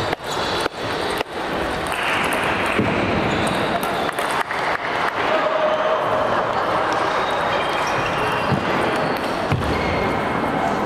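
Table tennis ball clicking off bats and the table during a rally: a quick run of sharp clicks in the first second or so, then fewer and more scattered. Behind them is a steady din of voices in the hall that gets louder about two seconds in.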